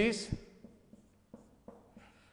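Marker writing on a whiteboard: a few faint, short strokes and taps.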